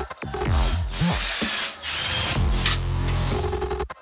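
Cordless drill driving screws into a wooden frame, its motor running in several short bursts, each winding down in pitch as it stops.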